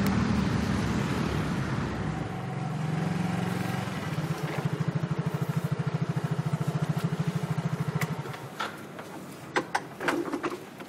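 Motor scooter engine running as the scooter rides along a street, then an even low putter of about ten beats a second that stops shortly before the end. A few sharp clicks follow.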